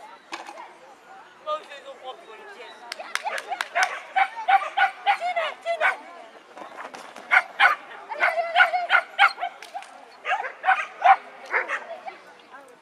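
A dog barking: runs of short, sharp barks, several a second, starting about a second and a half in, easing briefly around the middle and carrying on almost to the end.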